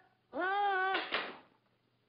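A cartoon voice sings one drawn-out note that rises, holds and dips at the end. It is followed by a short sharp knock about a second in.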